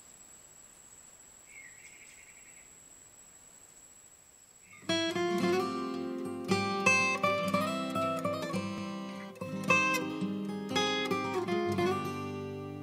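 Faint hiss at first; about five seconds in, an acoustic guitar starts the song's intro, picked notes ringing out over low chords.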